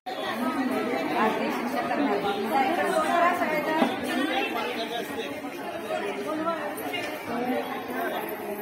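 Many overlapping voices of children and women chattering at once, with no single speaker standing out.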